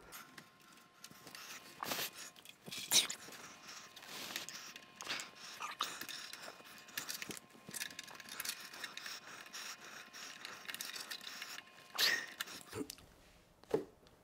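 Hands working cables and plastic power connectors inside an open computer case: irregular small clicks, scrapes and rattles, with a louder clatter near the end. A faint steady tone runs underneath most of it.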